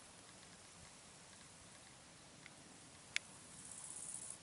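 Near silence: faint background hiss, broken by one sharp click a little after three seconds in, with a faint high hiss building near the end.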